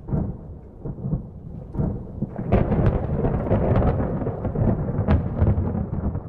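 Thunder rumbling, swelling about two and a half seconds in with sharp crackles, then dying away near the end.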